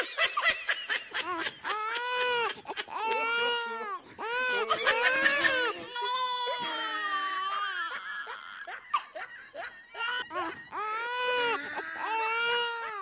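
Loud, repeated high-pitched crying wails, each rising and falling, with short breaks between.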